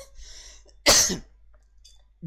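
A man coughs once into a close headset microphone: a single short, sharp burst about a second in.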